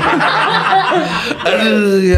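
Men laughing and chuckling together; about one and a half seconds in, one voice settles into a long held note.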